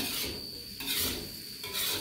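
Metal spatula scraping and tossing fried rice in a wok: three scraping strokes a little under a second apart.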